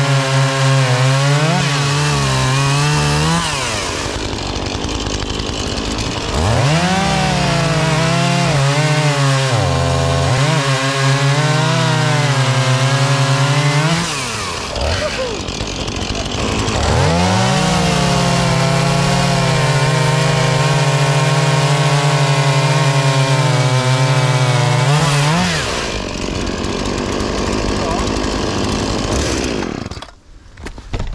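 Two small two-stroke hobby chainsaws, a Husqvarna and a Makita, cutting through logs side by side at full throttle. There are three long cuts, with the engines dropping back between them, and the saws idle near the end.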